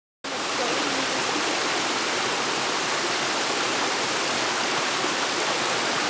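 Small waterfall on a woodland stream, water splashing steadily over rocks into a shallow pool.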